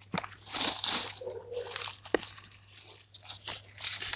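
Irregular crunching and rustling of dry leaf litter and soil being disturbed close to the microphone, with a few sharp clicks.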